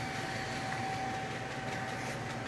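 Steady mechanical hum with a faint constant high tone running through it, with no knocks or other events.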